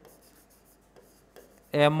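Faint scratching and rubbing of a marker pen writing words on a board.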